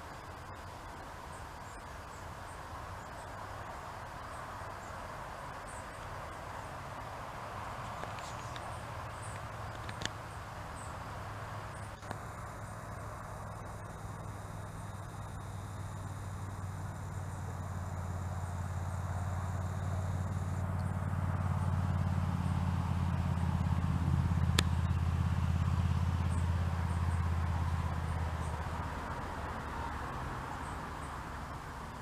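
A distant engine passing by: a low, steady drone that builds from about twelve seconds in, is loudest a few seconds before the end, then fades away.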